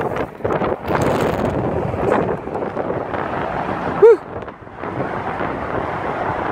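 Wind buffeting the microphone in a steady rumble. About four seconds in there is one short, loud squeak that rises and falls in pitch.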